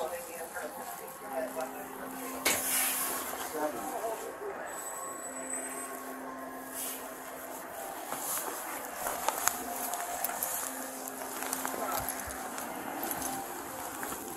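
Low, quiet speech over rustling and handling noise from a body-worn camera, with a low hum that comes and goes and one sharp knock about two and a half seconds in.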